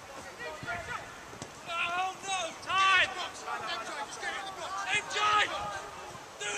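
Football players shouting to each other across the pitch during play: a few short, loud, high-pitched calls, the loudest about three seconds in, over faint outdoor background noise.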